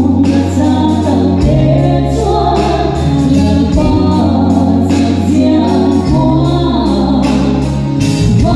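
Live gospel song: a woman singing into a microphone over an amplified church band of electric bass guitar, keyboards and drums, with bass notes changing about every second and a half.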